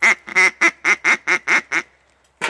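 Handheld duck call blown in a rapid string of about eight short quacks, each note dropping in pitch.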